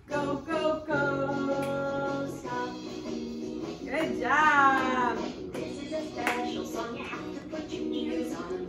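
Children's song playing: singing over an instrumental backing, with a swooping rise and fall in pitch about four seconds in.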